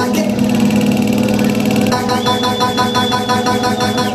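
Loud electronic dance music over a club sound system: a fast, evenly repeating synth pattern in the first half, then a steady beat with a long, high held synth tone from about halfway through.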